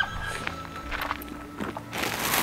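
Soft background music with sustained notes, under faint rustling and light handling knocks.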